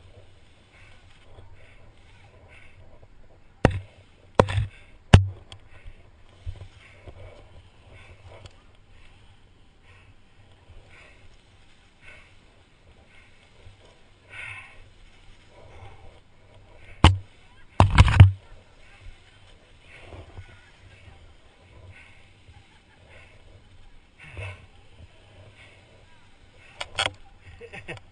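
Sharp knocks and clatters of abseiling gear on or against the helmet-mounted camera: a group of three a little after the start and another cluster in the middle, loud against a faint, low background.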